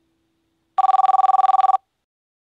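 A telephone ringing: one electronic ring about a second long, a fast trill of two steady tones, starting a little under a second in.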